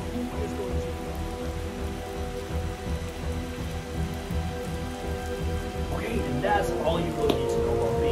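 Film soundtrack: a steady rain sound under a music bed of several sustained low tones that hold without change, swelling slightly near the end.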